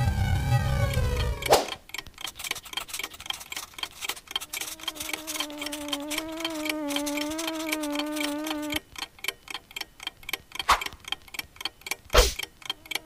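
Fast, even ticking of a clock sound effect. It opens with a short low rumble and a sweeping tone. Partway through, a steady low hum with a slight waver runs under the ticking for a few seconds.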